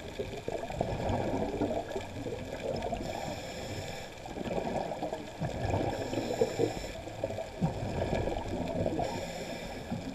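Muffled underwater water noise, an uneven gurgling churn, picked up by a camera's microphone while submerged.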